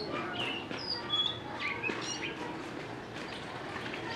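Small birds chirping: a scatter of short, high chirps through the first half, over a low steady background hum of the surroundings.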